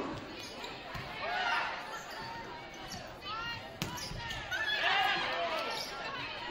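Athletic shoes squeaking on a hardwood gym floor in short, high squeaks, with a few sharp knocks of a volleyball, over the voices of people in the hall.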